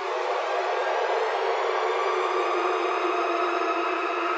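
Steady, dense synthesizer drone: a sustained bright chord with no beat under it, held level as the intro of a hip-hop instrumental.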